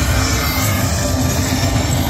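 Slot machine playing its electronic bonus-feature music as a free-spins bonus starts, over loud casino background noise.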